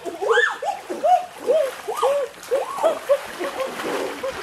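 A run of short rising-and-falling animal calls, about two or three a second, over running river water with some splashing.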